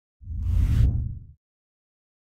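An editing whoosh sound effect with a deep rumble, swelling and fading over about a second. It marks the cut to a section title card.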